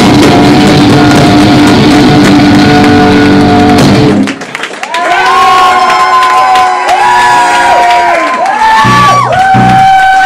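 A loud live rock band plays until the song stops abruptly about four seconds in. The audience then cheers and shouts until the end.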